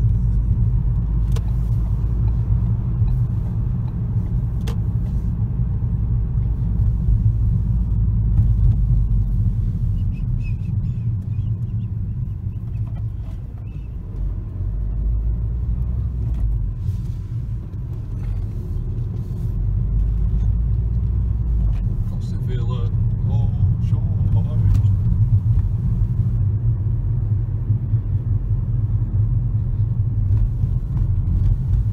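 Steady low rumble of engine and tyre noise heard inside a moving car's cabin, easing briefly about halfway through before building again.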